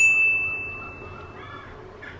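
A single bright ding sound effect, struck once and ringing out as one high tone that fades away over about a second and a half.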